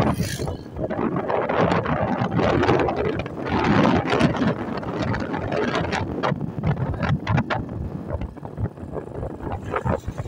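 Wind buffeting a phone's microphone in uneven gusts, with a vehicle running underneath.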